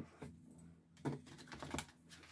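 A few faint clicks and taps of tarot cards being handled and set down on a table.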